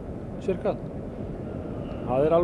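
A steady low rumble of background noise, with a brief fragment of a man's voice about half a second in.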